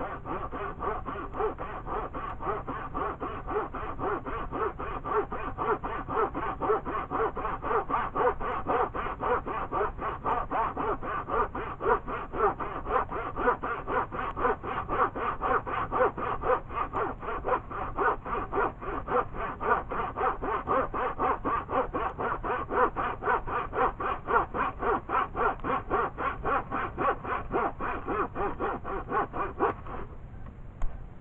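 Handsaw cutting through a wooden board, a steady back-and-forth rasp of even, quick strokes that stops near the end.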